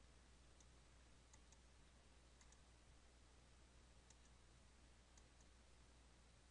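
Near silence with about nine faint computer-mouse button clicks, mostly in close pairs, as brush strokes are painted, over a low steady hum.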